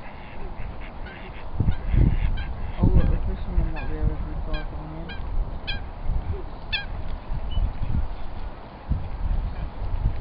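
Ducks calling in a series of short quacks, about one a second through the middle of the stretch, with low rumbling thuds in the first few seconds.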